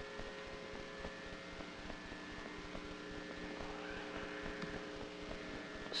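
Faint steady room hum with a few constant tones running through it, the background noise of a quiet room with no one speaking.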